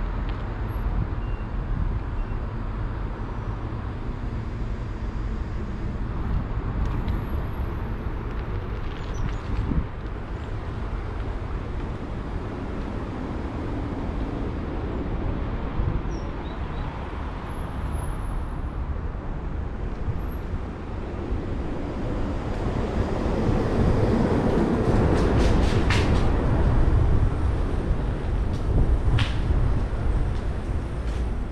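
Steady outdoor rumble of distant road traffic. It swells louder about two-thirds of the way through, and a few short clicks come near the end.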